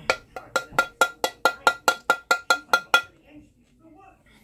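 A metal spoon tapping quickly and evenly against a container, about five taps a second for three seconds, each tap ringing briefly, as flour is knocked out of a measuring cup into a mixing bowl.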